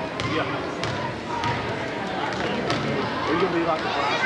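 Basketball bouncing on a gym floor during play, a few separate bounces, under steady talk and calls from spectators.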